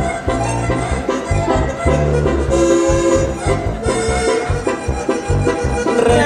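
Live band playing Tierra Caliente dance music: an instrumental passage with a steady, pulsing bass beat.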